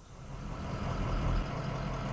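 Tow truck engine pulling up: a low rumble that grows louder over about the first second, then holds steady.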